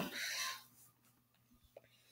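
A short breath from the narrator right after he stops talking, then near silence with one faint click towards the end.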